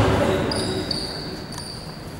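Basketball shoes squeaking briefly on the hard court floor about half a second in, after a ball thump at the start, with players' voices in the echoing hall.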